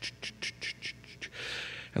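A man's mouth sound effect for an elevator: quiet tongue clicks about five a second, then a short breathy "shh" hiss near the end, standing in for the elevator rising and its doors opening.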